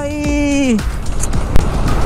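A voice holding one long drawn-out note that falls away after about a second, over background music, then a steady rush of road noise from the moving scooter.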